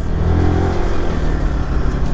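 Motorcycle engine running at low speed with a steady low rumble and road noise as the bike creeps along in slow traffic.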